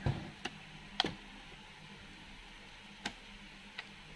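Handling of an Acer Aspire 4732Z laptop's plastic case: a few short clicks and light knocks spread over the few seconds as the lid is shut and the machine is turned over onto its lid.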